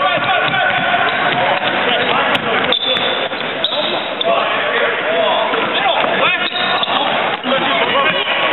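A basketball bouncing on a hardwood gym court during game play, with a few sharp knocks, the clearest about three seconds in, over constant voices of players and spectators.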